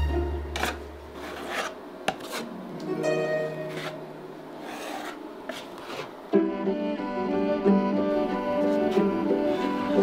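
Metal putty knife scraping plaster along plasterboard seams, several rasping strokes in the first six seconds, over background music. About six seconds in, the music, with bowed strings, becomes the louder sound.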